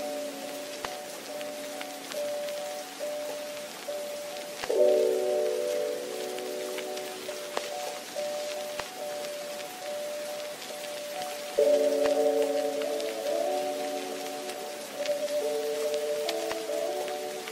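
Background music of soft sustained chords, changing to a new, louder chord about five seconds in and again near twelve seconds, over a steady rain-like hiss.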